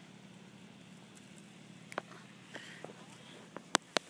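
Handling noise as the bass is unhooked: a few short, sharp clicks and taps, two of them close together near the end, over a faint steady low hum.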